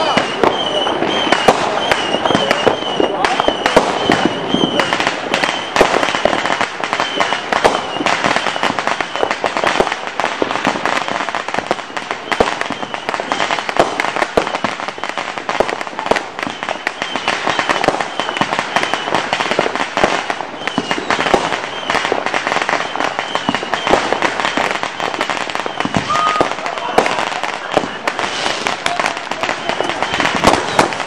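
Firecrackers going off in a rapid, continuous crackle of sharp pops, with louder cracks scattered through. A high wavering whistle comes and goes near the start and again in the second half.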